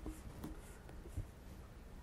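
Faint room noise with a few soft, scattered ticks and rustles.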